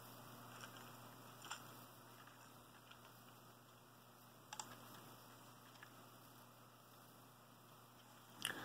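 Near silence: room tone, with a few faint light plastic clicks from a brick-built model tank being handled, the clearest about a second and a half in and about four and a half seconds in.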